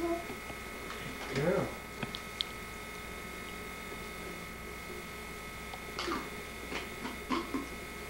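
A steady electrical hum with a few fixed tones, broken by a short rising-and-falling vocal sound about a second and a half in, a few light clicks, and several brief vocal sounds near the end.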